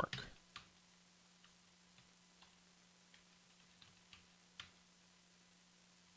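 Faint, scattered computer keyboard key clicks, about a dozen soft taps spread irregularly, over a low steady hum.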